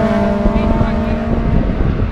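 Race car engines drawing away after passing, their note falling slightly and fading out about one and a half seconds in, over a low gusting rumble of wind on the microphone.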